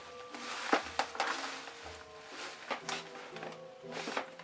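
Hands rummaging inside an opened cardboard box: scattered rustles and light knocks of paper and packaging, over soft steady music.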